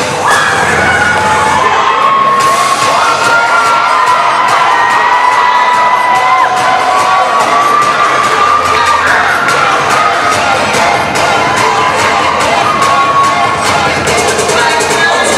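A crowd of teenagers screaming and cheering, with long, high held screams, over dance music with a steady beat.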